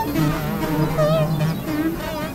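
Layered experimental electronic music: several pitched electronic tones warbling with a fast vibrato, sounding in short repeated notes at a few different pitches.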